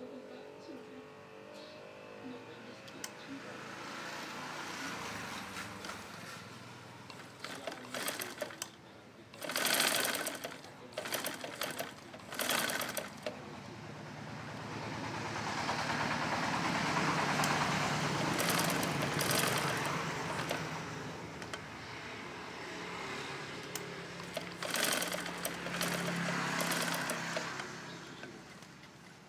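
Sewing machine stitching fabric in long runs, its speed rising and easing off, with bursts of sharp clicks about a third of the way in and again near the end.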